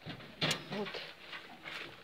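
A sharp knock-like rustle about half a second in, followed by a brief, faint goat bleat.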